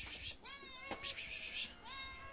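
A house cat meowing: one drawn-out meow starting about half a second in, with a second meow beginning near the end.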